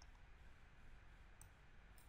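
Near silence with a low room hum, broken by two faint computer-mouse clicks, one about a second and a half in and one at the end.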